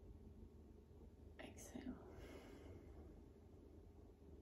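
One faint, breathy exhalation, part of a slow, controlled belly-breathing exercise. It starts about a second and a half in and fades away over about a second, against near silence.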